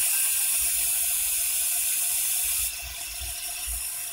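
Aerosol can of disinfectant spray hissing in a long steady burst that stops abruptly about two and a half seconds in, leaving a fainter hiss.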